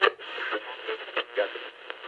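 Tinny, narrow-band audio, as heard through a small radio or telephone speaker: a faint voice-like murmur broken by short crackles and clicks.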